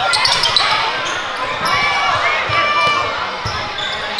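Basketball being dribbled on a hardwood gym floor, repeated thumps of the ball, with short high squeaks of sneakers on the court over steady crowd chatter in the gym.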